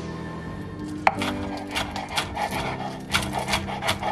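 Chef's knife chopping green onions on a wooden cutting board. A sharp first strike comes about a second in, then quick repeated cuts, about three or four a second.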